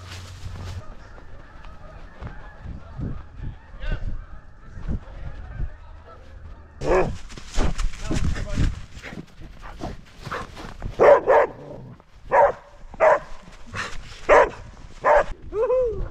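Border Collie barking at close range: about a dozen short, loud barks at uneven intervals, starting about halfway through.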